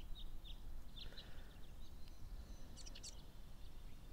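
Faint outdoor ambience: small birds giving short, scattered chirps, a few near the start and a quick higher cluster about three seconds in, over a low steady rumble.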